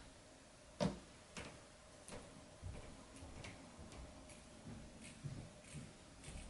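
Scissors being handled and snipping through leggings fabric: a run of faint, irregular clicks, the loudest about a second in.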